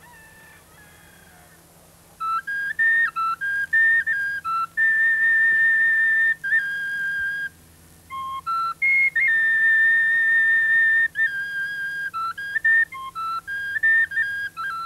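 A high-pitched end-blown flute played solo, starting about two seconds in. It plays a slow tune of long held notes with quick short notes between them.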